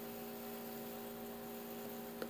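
A faint, steady electrical hum, a few even tones over a light hiss, with no other sound.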